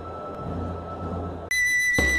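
Murmur of a large crowd, cut off about one and a half seconds in by a sudden, loud, steady high whistle-like note, as from a flute, that opens a jingle.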